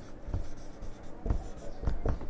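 Marker pen writing on a whiteboard in a few short strokes.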